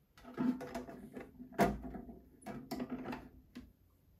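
A perforated metal tune disc being set onto a Kalliope disc music box and its pressure bar swung down over it: a series of metallic clatters and clicks, the loudest a sharp clack about one and a half seconds in.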